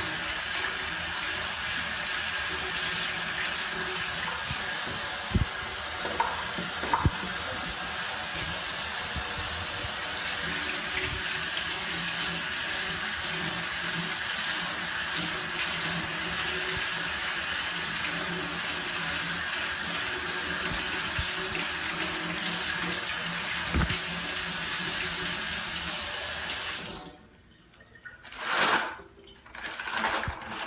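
Tap water running steadily into a stainless steel sink while hands are washed under it, with a few small knocks. The flow stops near the end, followed by a short noisy burst.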